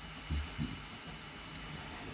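A quiet pause: steady low room hiss, with two soft low thumps about a third of a second apart near the start.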